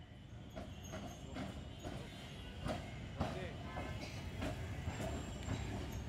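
Kolkata tram rolling slowly along street-level rails, with irregular clicks and knocks from its wheels and running gear over a low rumble; voices in the background.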